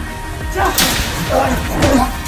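Fight-scene sound effects: a sharp whip-like swish about a second in, then shorter hits near the end, over background music.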